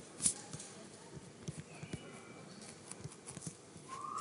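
Faint taps and scratches of a stylus writing on a tablet screen, with one sharper tap about a quarter second in.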